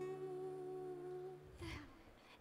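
The last note of a live acoustic song dying away: a held, slightly wavering sung note over acoustic guitar, fading and stopping about a second and a half in. A brief soft noise follows near the end.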